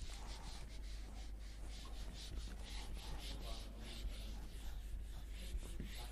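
Whiteboard eraser wiped back and forth across a whiteboard, a quick run of scrubbing strokes about three a second, clearing the board.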